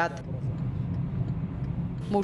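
A car driving in traffic: a steady low rumble of engine and road noise.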